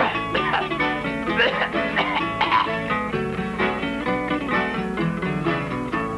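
Instrumental break in a gaúcho folk song, led by acoustic guitar (violão) picking notes, between sung verses.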